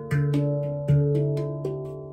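Handpan played with the fingers: about six notes struck in the first part, with the deep low note sounding loudly twice, each note ringing on and slowly fading before a pause near the end.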